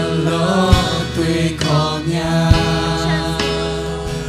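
Live church worship song: female voices singing a held, flowing melody into microphones over a band with a steady bass line and occasional drum hits.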